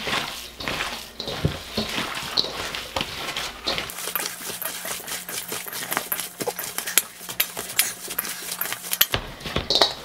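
Wet, sticky ground beef being kneaded by gloved hands in a stainless steel bowl, with irregular squelches and quick clicks of the meat and hands against the metal as the seasoning and cure liquid are worked in.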